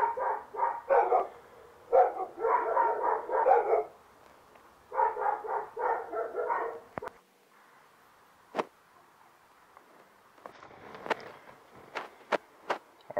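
A dog barking in quick runs of barks, three runs in the first seven seconds, followed by a few sharp clicks.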